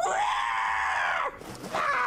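Screeching roars of a dinosaur character: one loud call lasting over a second, then a second starting near the end.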